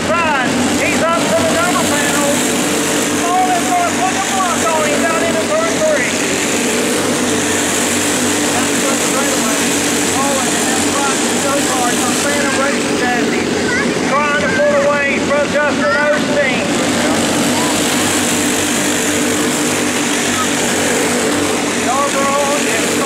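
Several box-stock racing kart engines running in a race, their pitches rising and falling over one another as the karts accelerate and back off around the track.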